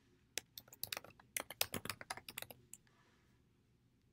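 Computer keyboard typing: a quick run of keystrokes lasting a little over two seconds, starting just under half a second in.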